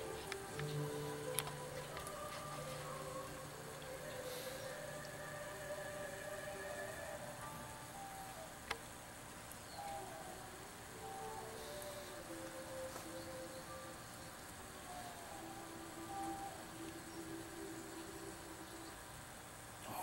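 Faint, soft music of long held notes that change pitch every second or so, with a single sharp click about nine seconds in.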